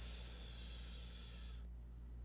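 A person breathing out audibly into the microphone, a sigh-like hiss that stops shortly before the end, over a faint steady low hum.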